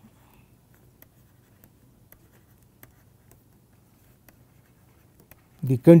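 Faint, irregular taps and scratches of a stylus writing on a tablet's surface, over a low steady hum. A man's voice starts just before the end.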